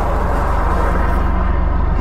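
Car engine running steadily, heard from inside the cabin as an even low hum.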